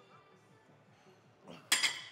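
Cable machine's metal weight stack dropping back down with one sharp clank and a ringing tail about a second and a half in, as the lat pulldown handle is released.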